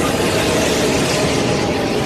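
Storm wind with driving rain, a loud steady rush of noise, with a faint steady tone underneath.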